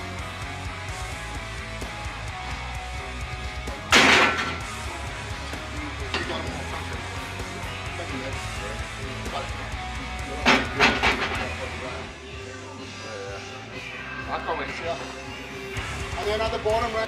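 Background rock music with a steady beat, cut by a loud sudden sound about four seconds in and two more shortly after the ten-second mark.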